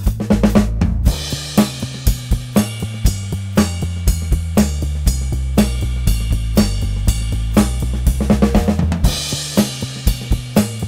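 Ludwig drum kit played along with a Moog Sub Phatty synthesizer bassline: bass drum and snare hits about twice a second, with cymbals ringing over them and the synth bass notes stepping underneath.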